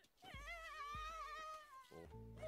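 A high-pitched child's voice from the anime soundtrack letting out one long drawn-out wail, rising slightly and falling away near the end.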